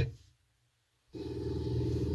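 Video audio from the car's Android head unit cuts off abruptly as playback is scrubbed to a new point. After about a second of dead silence it comes back suddenly with a steady low hum from the video's soundtrack.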